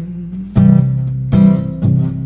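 Acoustic guitar strumming chords, with strong strokes about half a second in, again past a second and just before the end, while the singing pauses.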